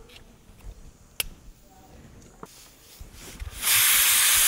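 A few quiet knife cuts into a hand-held carrot, with one sharp click about a second in. Near the end a pressure cooker cooking dal starts venting steam with a sudden, loud, steady hiss.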